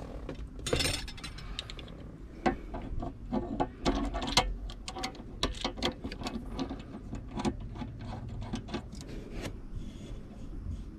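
Irregular clicks, taps and light rattles of a dashboard phone mount's parts being fitted together and adjusted by hand, with a brief rustle about a second in.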